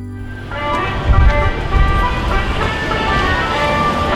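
Street traffic sound with a low rumble, starting about half a second in, under background music.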